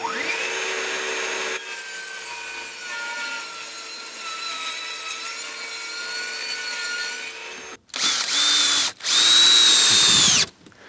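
Table saw and dust extractor running, the blade ripping through OSB sheet for the first second and a half, then the saw running on without load. About eight seconds in come two short bursts of a cordless drill driving screws, about a second each, rising to speed and winding down.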